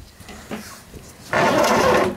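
Roller window shutter being pulled up, its slats rattling loudly, starting in the second half.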